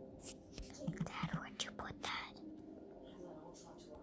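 Faint, low muttered voice with a few scattered light clicks.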